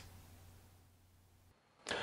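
Near silence, ending with a short click as new audio cuts in near the end.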